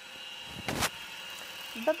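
Gammill Statler longarm quilting machine running, a steady high whine, with a brief rushing noise just under a second in.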